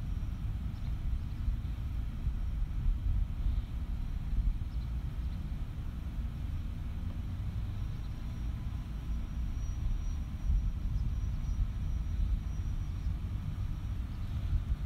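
Low, uneven rumble of outdoor background noise on an open microphone, with a faint thin high whine in the second half.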